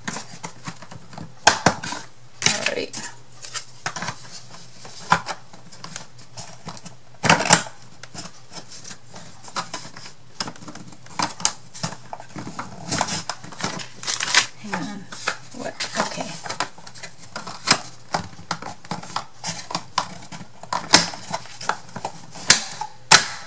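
Thin wooden kit pieces for a small dresser being slotted and pressed together by hand: irregular clicks, taps and clatter, with a few sharper knocks about a second and a half in and about seven seconds in.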